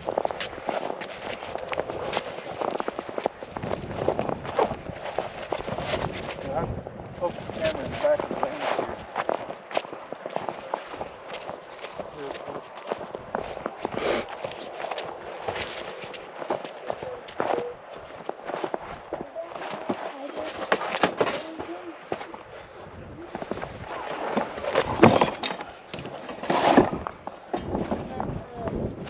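Footsteps crunching on thin snow and brushing through dry sagebrush in a quick, uneven run of short impacts, with indistinct voices now and then.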